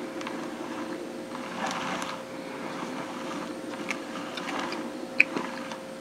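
Small electric motor of a rotating display turntable running with a steady hum, with a few faint ticks.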